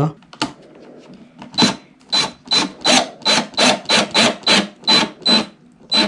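A cordless drill-driver runs in about a dozen short trigger pulses, roughly three a second, driving a small screw through a plastic drawer-runner locking clip into plywood. The short pulses are a gentle touch, because over-driving would crack the plastic clip.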